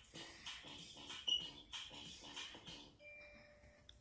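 Faint cartoon end-credits music from a TV's speaker, with an even, bouncy beat. About three seconds in the music stops, and a faint steady tone sounds for about a second.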